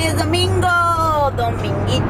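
A woman's drawn-out, sing-song voice over the steady low rumble of a car driving, heard from inside the cabin.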